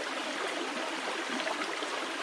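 Shallow creek water running steadily over rocks.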